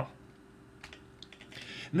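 A few light clicks from a computer keyboard or mouse as the screencast advances to the next slide, between words of quiet narration.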